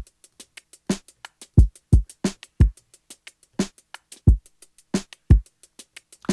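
A sampled hip-hop drum loop playing back: deep kicks that drop in pitch, a snare about every 1.35 s, and quick ticking hi-hats in between.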